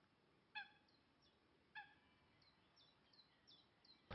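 Near silence with faint bird calls: two short pitched calls a little over a second apart, and a scattering of high, short falling chirps.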